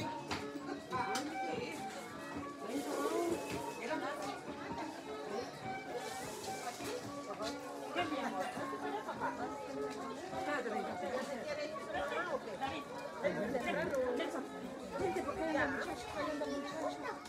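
Many people talking at once, with music playing in the background.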